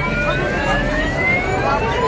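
Slow siren-like whistling tones, several overlapping, each climbing steadily in pitch over a dense noisy background.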